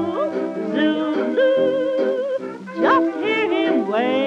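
A 1927 hot jazz band recording played from a 78 rpm shellac record: several wavering, sliding melody lines over the band, with a quick upward swoop about three seconds in.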